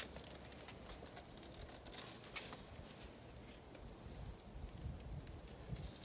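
Faint rustling and small scattered clicks of a fabric tail-feather costume piece and its tie string being handled and tied around a child's waist.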